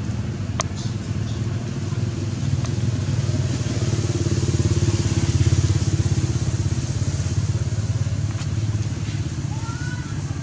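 A small motor engine running steadily, growing louder toward the middle and easing off again. A few short high chirps come near the end.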